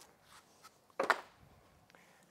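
Quiet indoor room tone with one short, soft noise about a second in, like a part being handled or set down.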